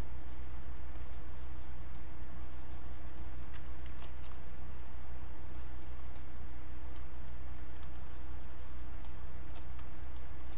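Pen stylus scratching and tapping lightly on a graphics tablet in short, scattered strokes, over a steady low hum.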